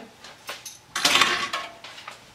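A stainless steel mixing bowl with a spatula in it being handled on a countertop: a couple of light clinks, then a short scrape about a second in.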